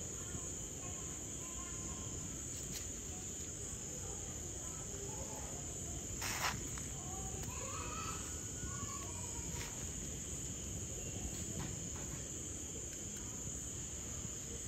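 Chorus of night insects keeping up one steady high-pitched trill, over a low rumble of background noise, with a single sharp tap about six seconds in.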